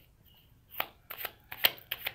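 A deck of tarot cards being shuffled by hand, heard as a quick, uneven run of card flicks and clicks starting about a second in.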